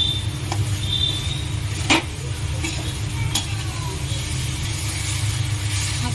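A perforated steel spoon stirring and scraping scrambled egg bhurji around a steel kadhai, with a few sharp metal knocks, the loudest about two seconds in, over a steady low rumble.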